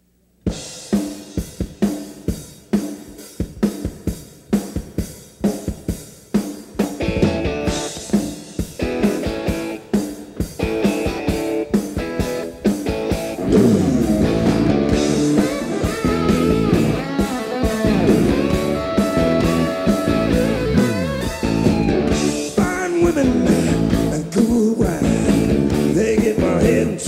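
Live rock band playing the opening of a song: drums keep a steady beat from the start, more instruments join about seven seconds in, and the full band comes in louder from about fourteen seconds, with electric guitar to the fore.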